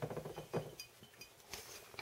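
A few faint, light clinks of glass: the empty wine bottle is knocked lightly as the light string and cord are handled at its neck.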